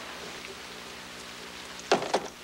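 Steady hiss with a faint low hum: the background noise of an old, worn film soundtrack. A brief sharp sound comes near the end.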